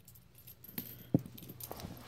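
Loose pennies clinking against one another as they are handled and sorted by hand: a few light, scattered clicks, the sharpest a little over a second in.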